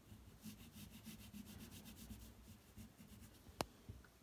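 Crayon colouring on paper in quick back-and-forth scratchy strokes, faint. A single sharp click near the end.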